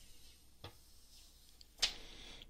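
Clear protective plastic film being peeled off a smartphone's glass back: a faint tick, then a sharp plastic crackle near the end as the film comes free.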